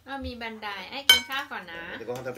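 Metal cutlery clinking once against a ceramic bowl about a second in, with a brief ringing, heard over a person's voice.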